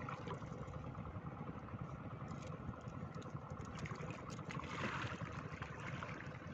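Water splashing and trickling around a wading man's legs and hands as he works a split-bamboo fence fish trap, with a brighter splash about five seconds in. A steady low rumble lies under it throughout.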